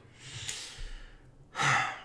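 A man sighs out a long breath, then takes a short, louder breath near the end.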